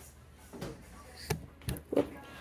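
A few short knocks and clatters of someone handling kitchen items while fetching the salt, over quiet room tone.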